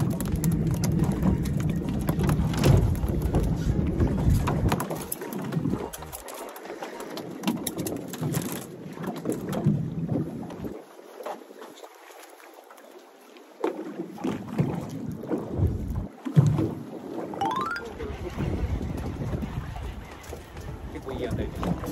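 Wind buffeting the microphone in gusts on a small boat in a choppy sea, with water moving around the hull. It is loud for the first few seconds, drops away in the middle, and comes back near the end.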